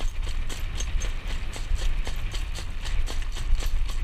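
Standardbred harness horse's hooves clip-clopping on a paved lane as it pulls a jog cart, an even, quick rhythm of about four to five hoof strikes a second, over a steady low rumble.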